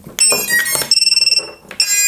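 Electronic speed controllers of a Holybro Kopis 1 racing quadcopter sounding their power-up beeps through the brushless motors as the battery is plugged in: a run of high electronic beeps, one held for about half a second.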